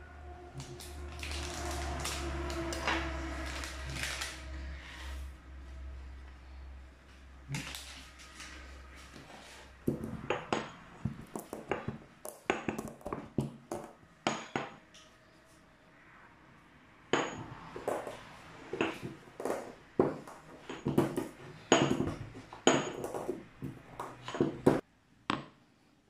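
Pepper being pounded and ground with a pestle in a heavy stone mortar: irregular sharp knocks and clinks of stone on stone, coming thick and fast from about ten seconds in. A low steady hum runs under the first ten seconds.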